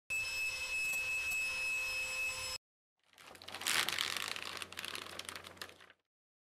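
Electronic intro sound effects. A steady buzzing tone with high whining overtones lasts about two and a half seconds and cuts off abruptly. After a short gap, a crackling, static-like swell with a low hum rises quickly and then fades away.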